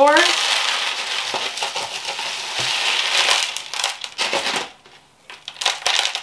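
Pon, a loose mineral semi-hydro substrate, crunching and rattling in a plastic tub as a begonia's roots are worked free of the granules. A steady crunching rattle that drops away about five seconds in, followed by a few sharp clicks of granules near the end.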